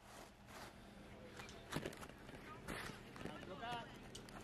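Faint distant voices with scattered light knocks over a low steady hum from a Jeep engine crawling up the rocks.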